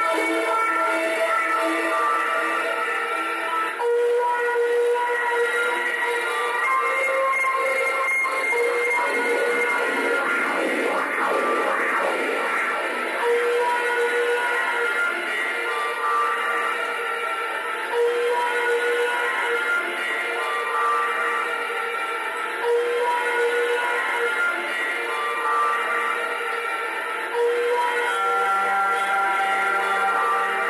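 Live instrumental music of slow, long-held notes that overlap and change pitch, with a fuller swell about ten seconds in, plausibly an electric bass played through effects pedals. It was recorded straight off the mixing console.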